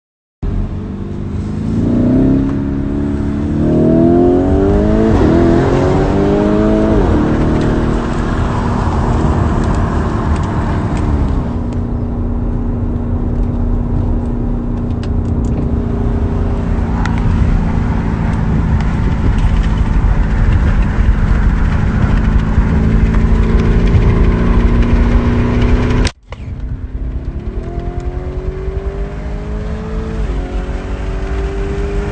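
Car engine accelerating hard, rising in pitch several times as it shifts up through the gears, then running steadily at high revs. The sound cuts out briefly about 26 seconds in, and the engine climbs again.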